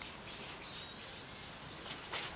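A small bird's high-pitched call, lasting about a second, with a short knock near the end.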